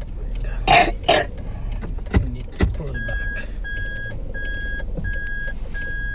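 A car's steady low hum, with two sharp coughs about a second in. From about halfway, an electronic beep repeats evenly, about one every 0.7 seconds, like a vehicle's reversing alert.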